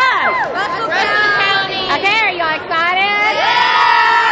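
A group of young girls shouting and cheering excitedly together, many high-pitched voices overlapping, rising and falling.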